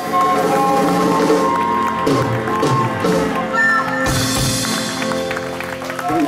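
Live jazz band playing, with a flute holding long notes over guitar and drums.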